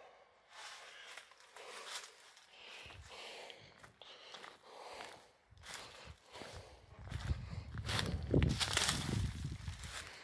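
Footsteps and rustling through dry leaves, brush and debris, in irregular steps. A louder low rumble joins them for the last few seconds.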